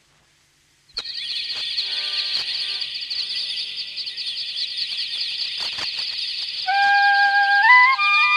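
Birdsong from a flock of many birds chirping together, starting abruptly about a second in. Near the end a flute melody enters over it, stepping upward in pitch, as the intro of a Tamil folk song.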